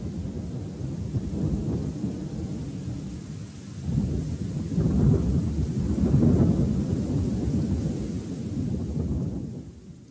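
A low rolling rumble with a faint hiss and no music, swelling about four seconds in and fading away near the end.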